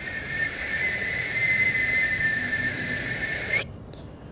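A long, steady, high whistled note held for about three and a half seconds, which bends slightly upward just before it stops.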